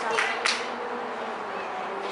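A faint steady buzzing hum, with two sharp clicks in the first half second.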